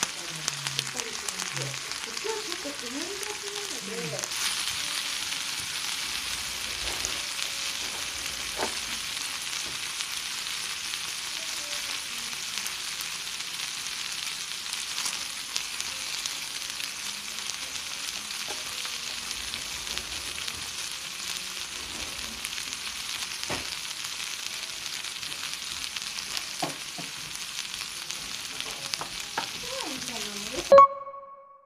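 Steak sizzling in a hot iron skillet: a steady frying hiss, with a few light clicks.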